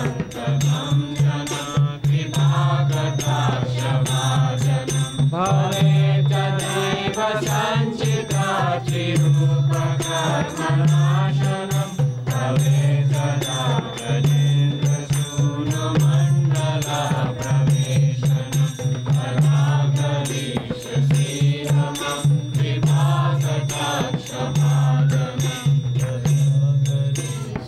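Devotional group chanting (kirtan): voices singing a mantra together over a steady rhythm from a hand-played mridanga drum, with regular percussion strokes.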